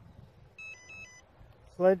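Electronic beeps from the quadcopter's powered-up speed controllers, sounding through its brushless motors: one short group of quick notes at two or three pitches, about half a second long, partway through.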